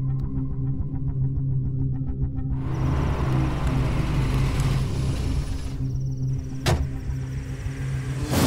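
Film soundtrack: a low, steady musical drone under a car's noise, which rises after the cut to the night street. A single sharp knock comes about two-thirds of the way through.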